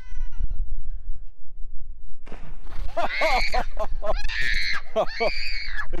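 A young girl shrieking in a run of four high-pitched cries, starting about two seconds in, as she gets into the cold water of an inflatable paddling pool.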